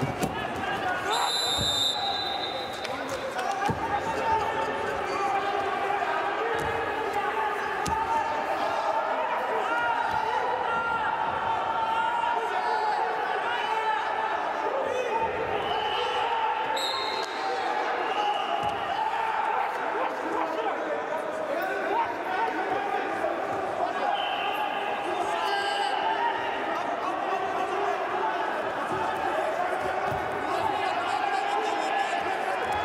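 Unintelligible voices calling and shouting throughout, echoing in a large hall, over a Greco-Roman wrestling bout on the mat, with a few dull thuds of bodies hitting the mat and a couple of brief high squeals.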